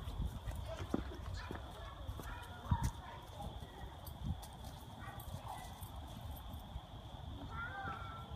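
Two dogs, a puppy and an older dog, playing on a lawn, with a few short high-pitched yips and scattered thumps over a low rumble of wind on the microphone.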